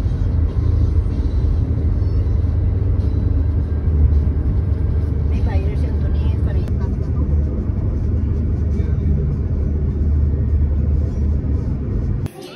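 Steady low rumble of engine and tyre noise heard inside a moving Toyota car's cabin, with faint voices briefly in the middle.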